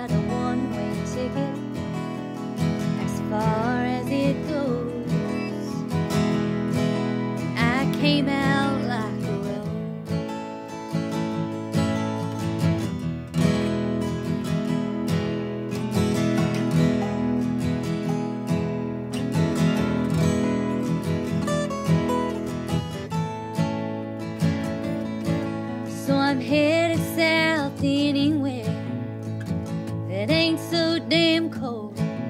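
Two acoustic guitars playing an instrumental passage of a country song, one strummed and one picked.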